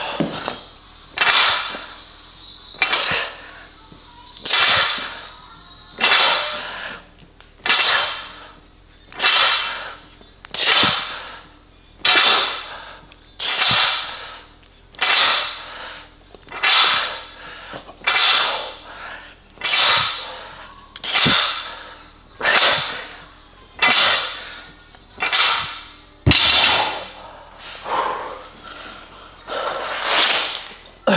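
A man exhaling sharply through his mouth with each rep while lifting a barbell: a hissing breath about every one and a half seconds, in a steady rhythm.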